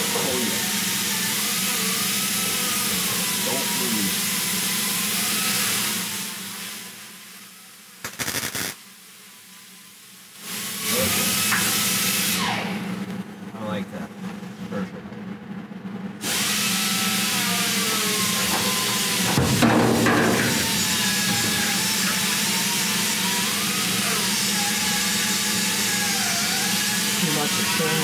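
Welding arc crackling and hissing in long steady runs. It stops about six seconds in, comes back for a short run near eleven seconds, then runs steadily from about sixteen seconds on.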